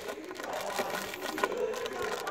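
Faint background voices with scattered light clicks and taps, in a lull between nearby speech.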